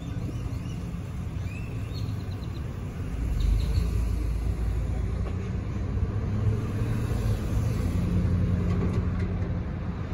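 Low, steady rumble of a car rolling slowly, heard from inside its cabin, growing louder about three seconds in. A few faint, short high chirps come early on.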